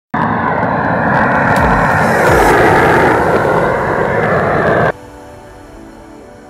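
Gas roofing torch flame burning with a loud, steady rush that cuts off suddenly about five seconds in, leaving quieter background music.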